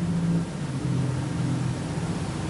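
Low droning soundtrack of an animated science video, played through a room's speakers, its pitch stepping down about half a second in.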